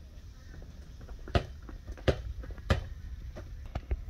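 Footsteps on a hard store floor: a handful of sharp knocks about two-thirds of a second apart over a low, steady background hum.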